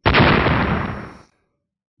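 Explosion sound effect: a sudden loud blast that dies away over about a second.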